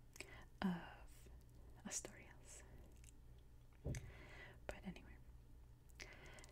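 Soft-spoken, whisper-like voice saying a word or two close to the microphone, then a few faint short clicks and noises over a low steady hum.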